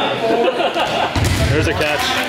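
Several people talking and calling out over one another, with a dull low thump a little past a second in.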